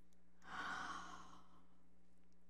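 A woman's single breath into the microphone, lasting about a second, over a faint steady low hum.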